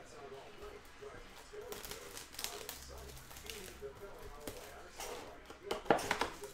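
Handling noises as a trading-card hobby box is opened: scattered clicks and rustles of cardboard and plastic, with a louder cluster of clacks near the end.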